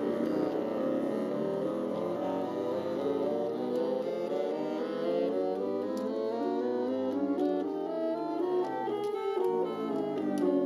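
Bassoon ensemble, contrabassoon included, playing a B-flat chromatic scale together, the notes moving in small even steps, climbing and then coming back down.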